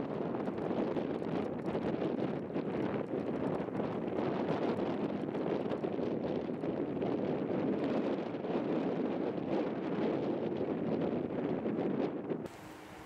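Steady wind buffeting the camera microphone, a continuous rushing noise without breaks.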